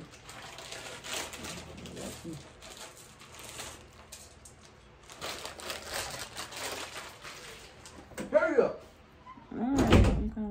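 Soft, irregular rustling and scratching of fingers working a loc while a shell accessory is put on. A person's voice sounds briefly twice near the end, the second time louder.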